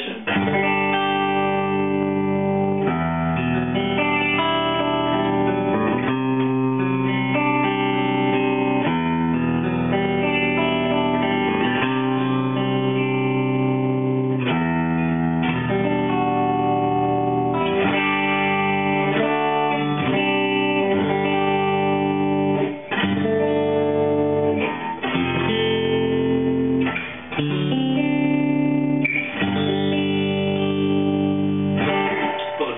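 RS Guitarworks LessMaster electric guitar with Lindy Fralin P-90 pickups, in the middle pickup position with both pickups on, playing a sequence of ringing chords that change every second or two, with a few brief breaks near the end.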